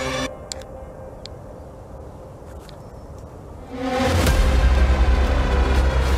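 Background music stops abruptly. For about three and a half seconds there is quieter outdoor ambience: a low rumble with a few short, high chirps. Then new music with a heavy bass and a steady beat comes in loudly.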